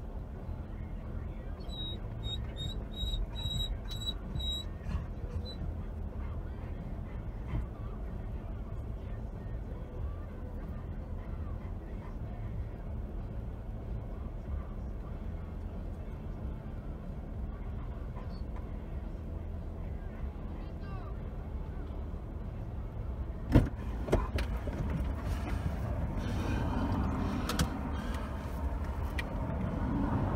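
Steady low hum of an idling vehicle picked up by a dashcam. A run of short, high electronic beeps comes a couple of seconds in, and a sharp click near the end is followed by louder rustling noise.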